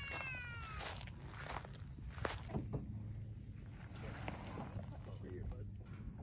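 A high voice trails off with falling pitch in the first second. Then quiet open-air ambience with a low steady hum and scattered faint knocks.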